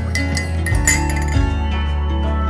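A metal spoon clinking a few times against a ceramic mug, the loudest clink about a second in, over steady background music with a strong bass.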